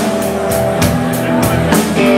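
A live electric blues-rock trio, with a James Trussart electric guitar through a Burriss amp, bass guitar and drum kit, playing an instrumental stretch between sung lines. It has held guitar notes over regular drum and cymbal hits.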